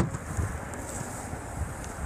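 A sharp click from the Chevrolet Sonic's liftgate latch releasing at the very start, followed by steady wind noise on the microphone as the hatch is raised.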